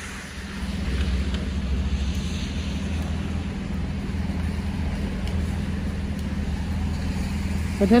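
A motor vehicle's engine running steadily close by: a low, even hum that swells up about half a second in and then holds.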